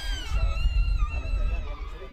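A child's long, high-pitched squeal, held for about two seconds and wavering and dipping slightly in pitch, over a low rumble.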